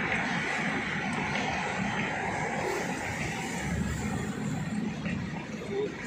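Car driving along a concrete road: a steady drone of engine and road noise heard inside the cabin.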